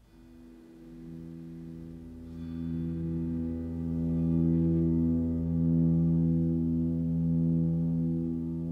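A sustained instrumental drone chord of steady tones fading in from near silence, a low note entering about a second in and higher ones about two seconds in, then swelling and slowly pulsing in level.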